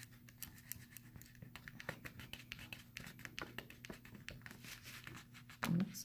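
Fingertips rubbing and pressing copper foil tape down onto paper over a thin LED wire lead: a faint, irregular scratching made of many small ticks.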